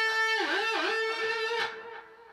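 Electric guitar through an amplifier: a note fretted at the seventh fret of the G string is picked and rings, its pitch dipped down and brought back up a couple of times with the tremolo bar, before the note fades.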